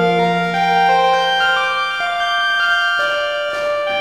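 Electronic synthesizer music from Sonic Pi's internal synths mixed with a Korg X5DR synth module: held, organ-like notes that step to a new pitch every half second or so.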